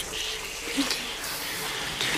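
Soft, steady hissing of a mass of snakes writhing on a gorgon's head, with a few short louder hisses over a faint low drone.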